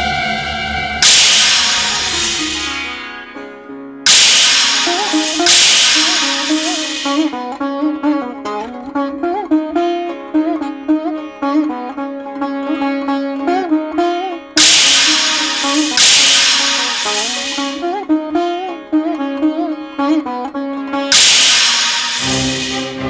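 Dramatic background score: a plucked string melody with sliding, bent notes, broken up by six loud bright strikes that ring out and fade over a second or two each.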